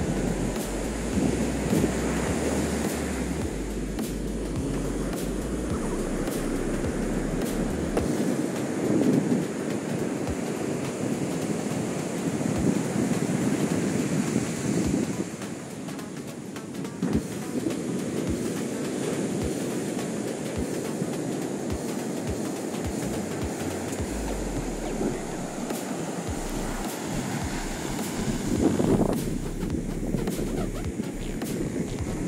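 Ocean surf breaking and washing up a sandy beach, a steady rushing that swells and ebbs. Wind buffets the microphone at times.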